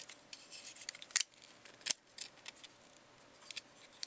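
Plastic parts of a Generations Megatron Transformers figure clicking and snapping as it is transformed by hand, with two loud sharp clicks a little after one second and just before two seconds in, and lighter handling rustle and ticks between.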